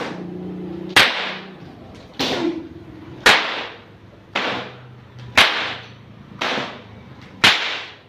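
A 2.5 m Ponorogo pecut (cemeti whip) cracked seven times, about once a second, each a sharp loud crack with a short trailing echo.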